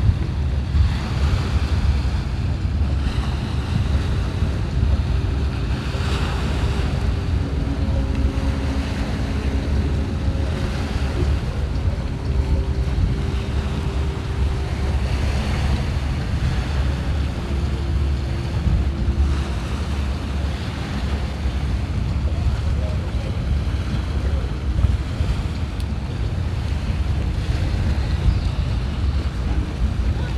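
Wind buffeting the microphone over a steady low rumble and the wash of harbour water. A few faint steady hums come and go in the first half.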